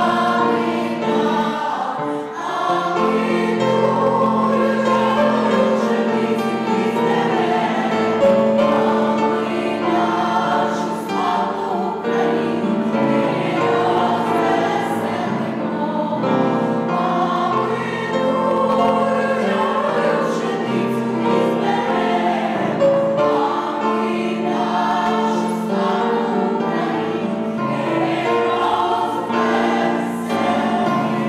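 A choir of women and children singing together in parts, with long held notes.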